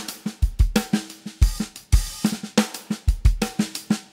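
Native Instruments Studio Drummer sampled acoustic drum kit playing a programmed groove. Busy sixteenth-note open and closed hi-hats run over kick drum and snare, with quiet snare ghost notes.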